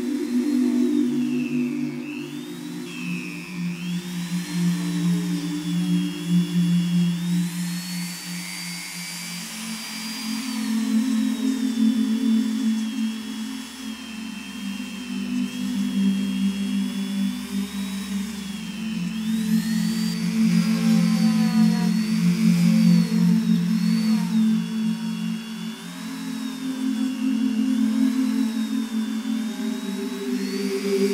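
Handheld rotary tool spinning an edge-burnishing bit against the edge of a leather wallet, its high whine rising and falling in pitch as it is pressed to the leather, over background music.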